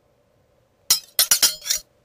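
Glassy clinks: about five sharp, ringing strikes in quick succession, starting about a second in and over within a second.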